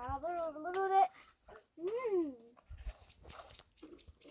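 A small child's wordless voice: wavering vocal sounds in the first second, then one cry that rises and falls in pitch about two seconds in.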